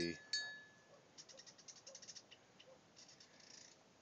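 A single short metallic ring about a third of a second in, fading quickly, followed by faint scattered rustling ticks as a dog moves through dry grass and reeds.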